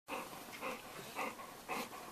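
Small dog breathing close to the microphone in short, noisy puffs, about two a second.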